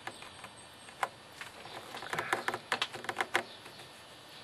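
Irregular light clicks and taps, one about a second in and a quick run of them near the middle, from a hand handling a plastic bubbler bottle and its hose.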